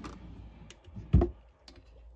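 White IKEA Alex drawer being pushed shut: a few light clicks as it slides and the makeup containers inside shift, then one dull thump a little after a second in as it closes.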